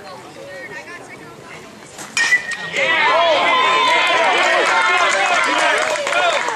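A baseball bat strikes the ball about two seconds in with a sharp crack and a brief ring, typical of a metal bat. Straight after, a crowd of spectators breaks into loud cheering and shouting.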